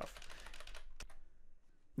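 Computer keyboard keys pressed in a quick run of faint clicks, then one sharper keystroke about a second in, then quiet.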